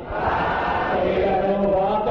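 A group of men chanting an Islamic devotional chant together, mostly in unison, with long held notes.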